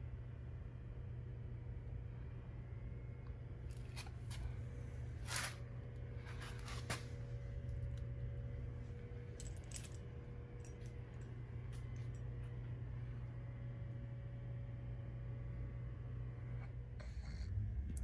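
Faint steady low hum with several brief, light clicks scattered through the middle of the stretch, the clearest about four, five and seven seconds in.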